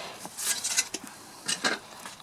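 Fingers working loose soil around a yam shoot's roots, lifting it out: a few short bursts of soft crumbling and rustling.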